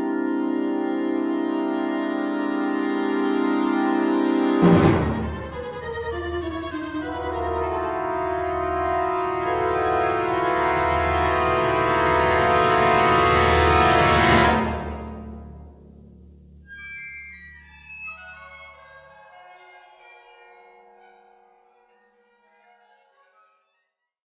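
NotePerformer's sampled orchestral brass section playing a passage in bucket mutes. A held muted chord comes first; about five seconds in, a loud accent brings in a timpani roll under moving brass lines, which fade out around fifteen seconds. Scattered high waterphone tones then die away.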